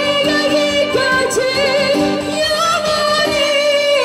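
A woman sings a high, belted melody to a strummed acoustic guitar. Near the end she holds a long high note with wide vibrato.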